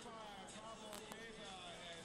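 A quiet lull with faint, distant voices over low background noise.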